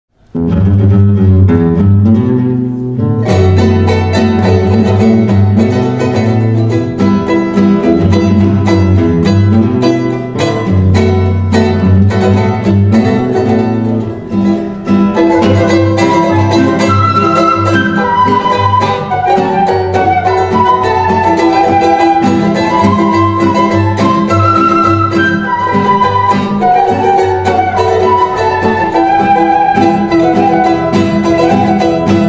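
Andean folk ensemble playing live, with strummed and plucked acoustic guitar and a small plucked string instrument. A flute melody comes in about halfway and carries the tune over the strings.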